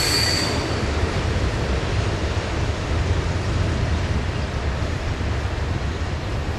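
Freight train cars rolling away on the rails, a steady rumble with a thin wheel squeal that fades out about a second in.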